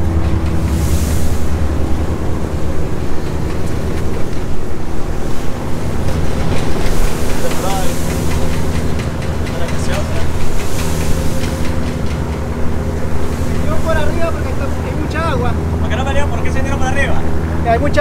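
A ferry's engine runs with a steady low drone while the boat crosses choppy water. Wind buffets the microphone and waves wash along the hull.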